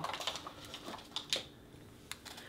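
A few light clicks and taps of plastic cosmetic jars and compacts being picked up and handled, the sharpest about two-thirds of the way through.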